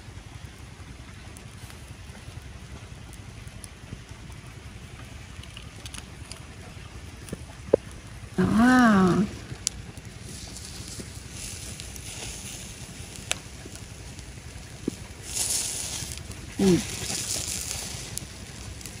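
Clams on a charcoal grill sizzling and bubbling in their shells as scallion oil is spooned onto them. The sizzle builds over the second half and is loudest near the end, with a few light clicks of a spoon and tongs and one short vocal sound about halfway.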